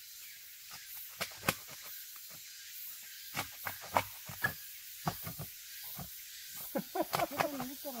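Scattered sharp cracks and snaps as Chinese cork oak bark is pried and peeled from the trunk by hand, over a steady high hiss.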